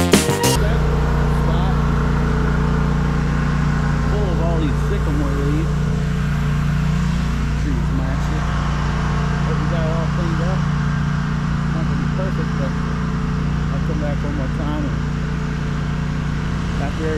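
Toro zero-turn mower's engine running steadily at mowing speed, blades turning as it mulches leaves. Music cuts off about half a second in.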